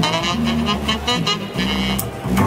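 ROLI Seaboard synth keyboard played as a jazz line: a bass line stepping under a higher melody, with several notes sliding in pitch.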